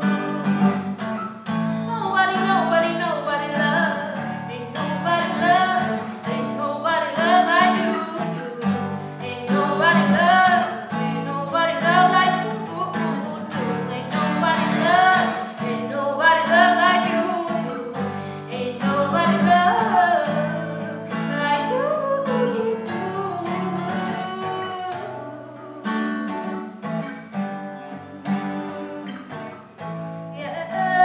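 A woman singing a pop/R&B melody over an acoustic guitar played with plucked and strummed chords.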